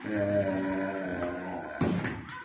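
A man's voice holding one long, steady vowel at a flat low pitch for nearly two seconds, with a sharp click near the end.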